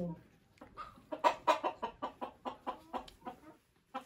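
A domestic hen clucking in a quick run of short calls that fades toward the end.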